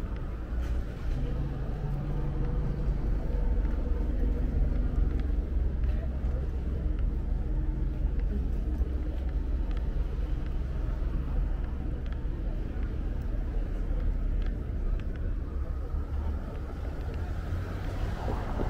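City street ambience: a steady low rumble of passing car traffic, with indistinct voices of passers-by.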